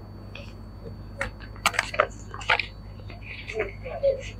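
Paper wrapping crinkling and rustling in a few sharp crackles as a small gift package is opened and an envelope drawn out.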